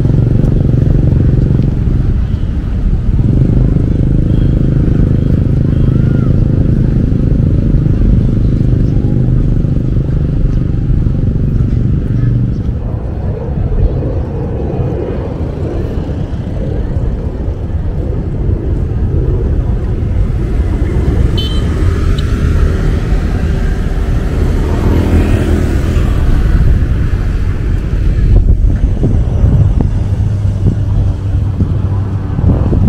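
Motorcycle engine running steadily while riding, with wind and road noise. About twelve seconds in, the steady hum gives way to a rougher, noisier sound.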